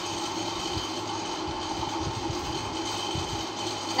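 Steady background noise: a low hum with an even hiss and no distinct events.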